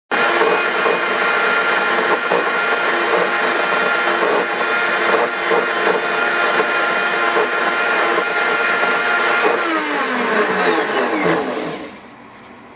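Blendtec high-powered blender running at full speed, grinding dried coconut pulp into a fine flour. About nine and a half seconds in, the motor begins to wind down, its pitch falling until it stops near the end.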